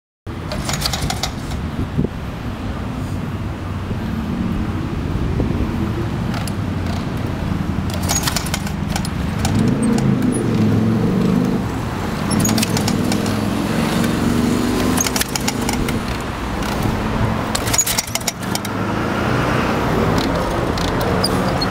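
Harley-Davidson Panhead V-twin engine running at a steady idle, with a few sharp metallic clicks and rattles scattered through.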